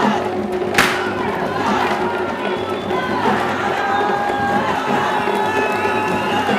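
Traditional barrel-drum music playing under a crowd that cheers and shouts, with long held yells rising and falling. One sharp crack stands out about a second in.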